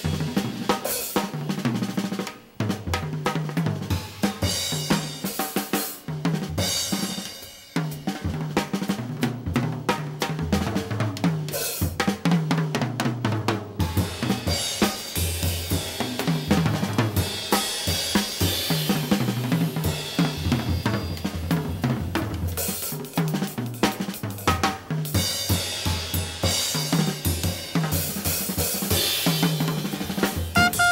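A jazz drum kit played in a busy, continuous passage of snare, bass drum, hi-hat and cymbals, with two brief near-breaks about two and a half and seven and a half seconds in.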